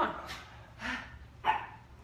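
Three short, sharp vocal bursts about half a second apart, the last the loudest and most sudden.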